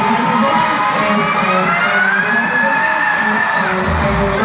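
Live rock band playing at full volume, heard from within the audience. A single long note glides upward over the first two seconds and is held until it breaks off just before the end.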